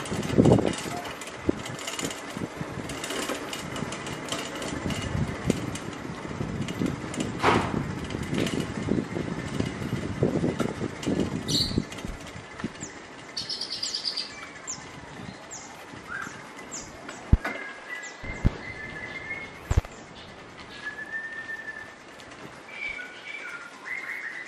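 An old bicycle rattling and bumping over brick paving, loudest in the first half. In the second half, small birds chirp in short calls.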